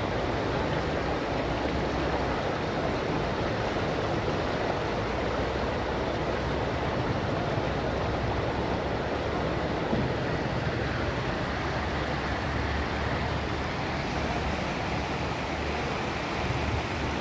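Brown floodwater rushing and churning over a paved road in a steady, unbroken wash of flowing-water noise.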